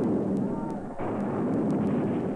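Old wheeled field cannons firing: a cannon shot about a second in, and the fading tail of another shot just before it. Each shot has a long fading echo.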